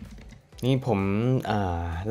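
A man speaking, starting about half a second in, preceded by a few faint clicks.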